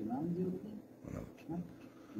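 A man's voice speaking quietly in short, broken phrases.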